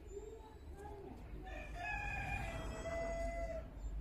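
A rooster crowing: one long call of about two seconds, starting about a second and a half in, after a few shorter, lower calls.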